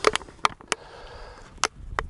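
A sock being pulled over a thin plastic water bottle: a few sharp clicks and crackles from the bottle's plastic over soft fabric rustling.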